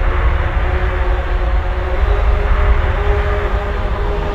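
Soundtrack of an animated channel intro: a deep, steady rumble with a few held tones above it, in the manner of a cinematic drone.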